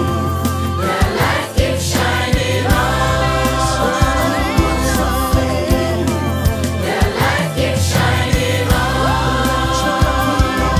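Gospel song sung by a many-voiced choir over a band, with held, swelling vocal lines and a steady beat underneath.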